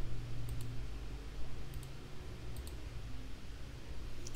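Computer mouse clicking: three quick double clicks about a second apart, over a steady low electrical hum.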